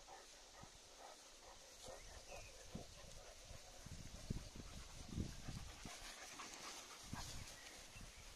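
Dogs moving through tall meadow grass, with faint rustling and a run of low thumps in the middle, the loudest a little after four and five seconds in.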